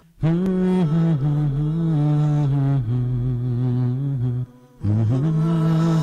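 Closing vocal music: a low voice chanting a slow melody in long held notes, pausing briefly about four and a half seconds in.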